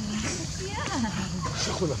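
Long-tailed macaques giving short squealing calls that glide up and down in pitch, three in the space of two seconds. A person laughs briefly near the end.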